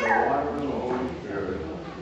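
An infant whimpering and fussing: a high cry that slides down in pitch at the start, then fades, over low murmured speech.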